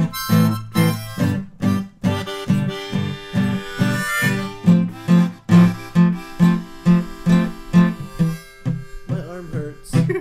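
Harmonica playing blues over a strummed acoustic guitar keeping a steady rhythm of about three strokes a second. The playing breaks up near the end.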